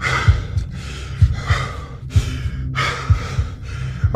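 A person breathing hard from exertion after a steep climb, with long, hissy breaths coming in and out about once a second. A low rumble with small thumps runs underneath.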